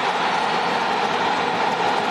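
Football stadium crowd cheering loudly and steadily as a goal is scored.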